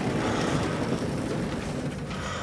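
Sliding chalkboard panels being pushed up along their frame, a steady rolling, scraping noise that slowly fades.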